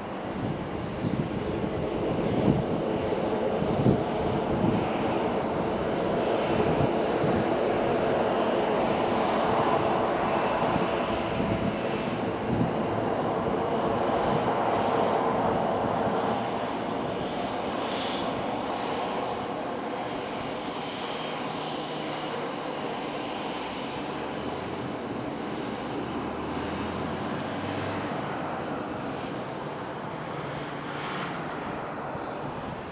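Ryanair Boeing 737-800's twin CFM56 turbofan engines running at taxi power, a steady jet engine noise with a faint high whine, swelling about a third of the way in and easing off through the second half.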